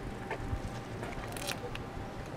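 Open-air street ambience: a low, uneven rumble with faint distant voices, and a brief sharp click or rustle about one and a half seconds in.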